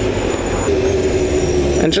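Motorcycle engine running while riding in slow traffic, with road and wind noise: a steady low rumble, joined about a third of the way in by a steady engine note.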